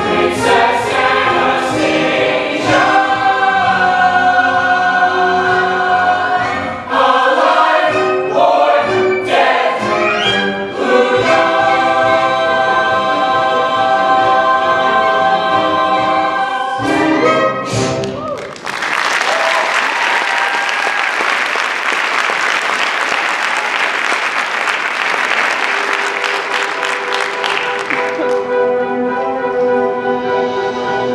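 Musical-theatre ensemble and orchestra singing the closing bars of a number, ending on a held chord. About 18 seconds in, audience applause takes over for about ten seconds, then soft orchestral music comes back in.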